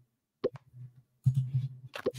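A couple of short, sharp pops about half a second in, like the join notification of an online quiz lobby as players enter. Near the end comes a louder low, pulsing sound from a man's voice.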